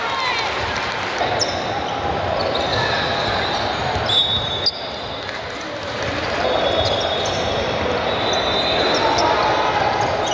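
Basketball being dribbled on a hardwood gym floor, with sneakers squeaking on the court a few times and indistinct voices echoing in a large hall.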